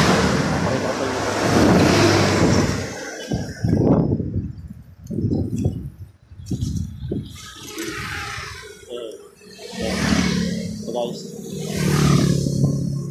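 A loud rushing noise for about the first three seconds, then muffled, indistinct voice sounds with a low hum near the end.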